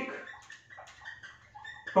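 Whiteboard marker squeaking against the board in several short strokes as a word is written.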